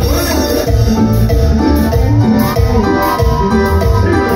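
Live cumbia band music: a keyboard melody over bass and steady percussion.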